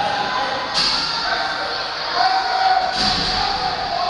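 Shouting voices echoing in a large indoor arena, with two sharp knocks, one about a second in and one near three seconds.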